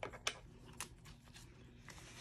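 Faint handling sounds: a few soft clicks and rustles as paper banknotes are taken from a vinyl budget binder.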